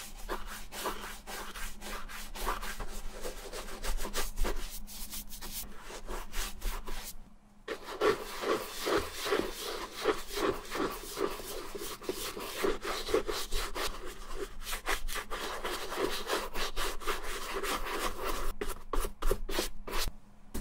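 A small wooden-handled dauber brush scrubbing neutral leather cream into the smooth leather of a Red Wing boot in quick back-and-forth strokes, with a short pause about seven and a half seconds in.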